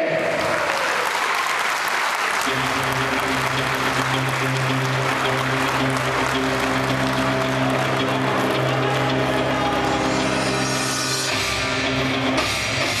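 Crowd applauding over music from a PA; a low held chord comes in about two seconds in, and a rock track with drums starts near the end.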